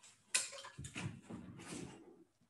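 Hard objects being handled: a sharp clack about a third of a second in, then clinking and rummaging as telescope eyepieces and accessories are picked up and set down.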